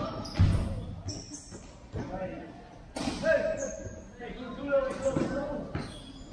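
A futsal ball being kicked and bouncing on a tiled sports court, several separate thuds, with players' shouts ringing in a large indoor hall.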